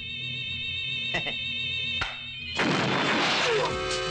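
Kung fu film soundtrack: sustained music with two sharp hits, one about a second in and one about two seconds in, then a loud noisy crash from about two and a half seconds in.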